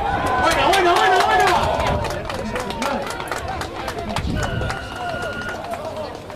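Spectators and players shouting and cheering as a rugby try is scored, loudest in the first two seconds, with scattered hand claps. Near the end a referee's whistle is blown once, held for about a second.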